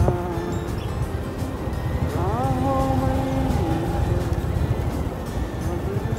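Steady low rumble of a vehicle riding along a paved road. About two seconds in, a held pitched sound rises and stays level for over a second.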